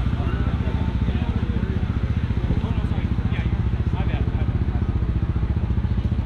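An engine idling steadily with an even, fast low pulse, with voices in the background.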